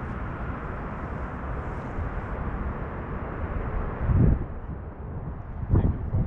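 Outdoor ambience of wind on the microphone: a steady low rumble, with one stronger gust buffeting the microphone about four seconds in.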